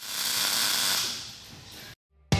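MIG welding arc crackling steadily, easing after about a second and cutting off suddenly just before the end.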